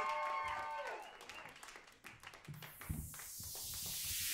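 Audience applause under a held musical chord that fades out about a second in; then a swelling noise sweep builds as a backing track starts up.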